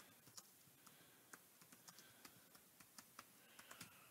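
Faint typing on a computer keyboard: about a dozen soft, irregularly spaced key clicks.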